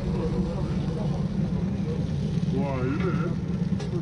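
Street-food stall ambience: a loud, steady low rumble, with a voice briefly past the middle and a couple of sharp metallic taps near the end, as from a spatula on the steel griddle.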